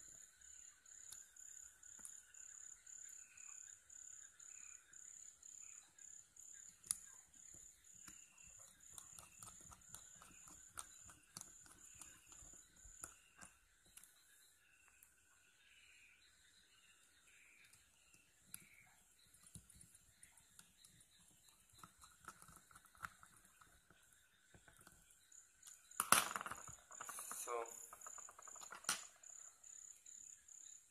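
Faint, steady high chirping of a cricket at about two pulses a second, with small scattered clicks and taps of hands and a small screwdriver working on a smartwatch's back case. A louder burst of noise about four seconds before the end.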